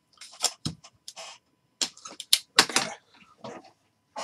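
A quick, irregular run of sharp clicks and knocks, about a dozen, some with a short rustle after them: handling noise from objects being moved about on a desk.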